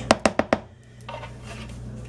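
A silicone spatula knocking against the rim of a plastic food container, about five quick taps in the first half-second, then only faint room hum.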